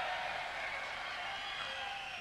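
Live concert audience in the hall: a steady wash of crowd noise and cheering, with a few faint held tones over it.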